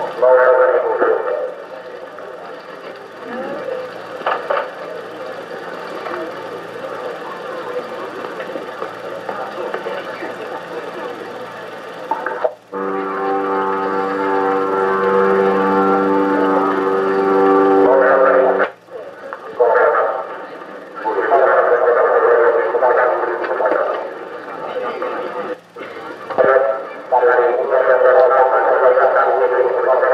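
Muffled, indistinct voices with a dull, narrow sound. A steady held tone of several pitches comes in a little before the middle, lasts about six seconds and cuts off abruptly. The sound drops out suddenly a few times.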